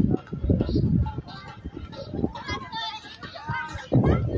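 People talking, with high-pitched children's voices calling out in the second half.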